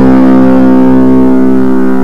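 Electric guitar played through a Big Zed Muff fuzz pedal, one heavily distorted note held and sustaining steadily without a break.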